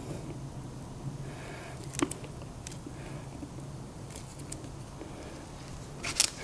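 Faint steady low hum with a few light clicks of the stainless steel plunger being handled and set into the aluminium piston cap, the sharpest click about two seconds in.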